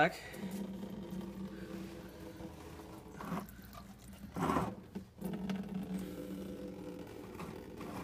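Coolant trickling from an opened radiator drain petcock into a plastic drain pan, over a steady low hum. Two brief handling sounds near the middle.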